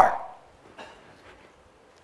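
A man's speaking voice breaks off and its last word dies away in the room's echo within about half a second. Then comes a pause of near silence with a few faint, brief noises.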